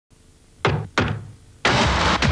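Two sharp knocks on a door, a third of a second apart, a cartoon sound effect. About a second and a half in, a sudden loud rush of noise begins as the door swings open.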